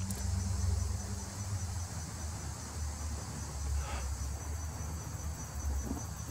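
Steady high-pitched chirring of insects, with a low rumble underneath.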